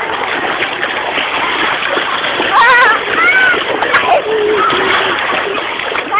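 Sea water splashing steadily, with a few short, high-pitched calls over it in the middle.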